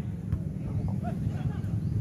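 Outdoor ambience at a football pitch: a steady low rumble, like wind buffeting the microphone, with faint distant voices and a light click about a third of a second in.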